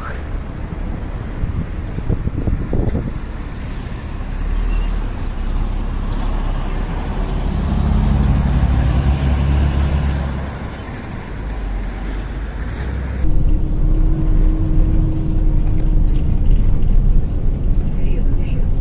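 Engine and road noise of a city bus heard from inside as it drives, the engine swelling about eight seconds in and then easing. From about thirteen seconds a steady hum comes in and the sound grows louder.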